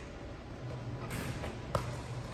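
Low steady hum with two faint knocks, the sharper one near the end, as the Gun 12K rebounding machine returns the ball to the shooter.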